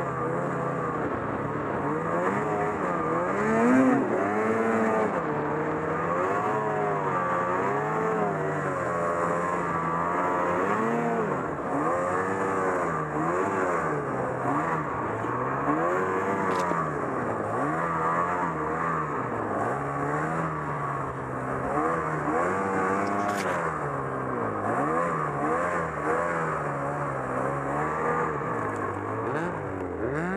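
Ski-Doo Summit XM snowmobile's two-stroke engine, ridden hard through deep powder: the revs swing up and down every second or two with throttle changes.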